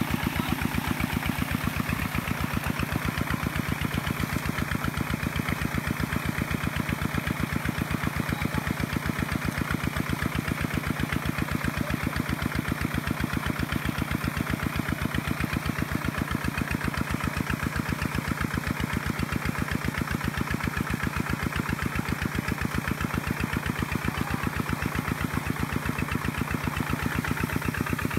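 Single-cylinder diesel engine of a Kubota two-wheel walking tractor running steadily with a rapid, even chugging, while the tractor is stuck in deep paddy mud with its cage wheels churning.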